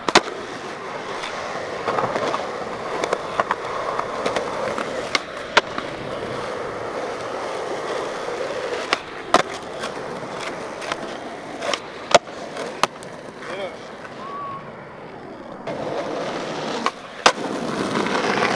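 Skateboard wheels rolling over rough asphalt, broken by sharp cracks of the tail popping and the board slapping down on landings, about a dozen times.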